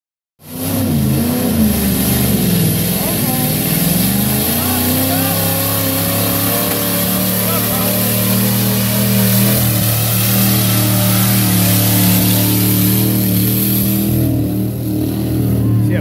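Chevy pickup truck engine revving hard while driving through a mud pit. Its pitch swings up and down for the first few seconds, then holds high and steady, with a brief dip near the end.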